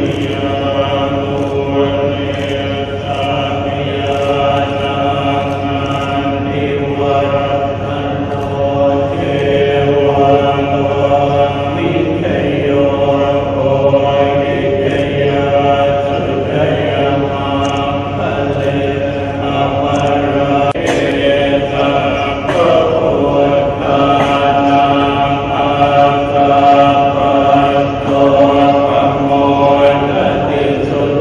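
A group of Buddhist monks chanting together in Pali, a steady unison recitation held on a near-constant pitch, picked up through microphones.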